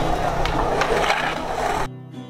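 Skateboard wheels rolling on a concrete bowl, a noisy rumble with a few sharp clacks; the sound drops away abruptly near the end.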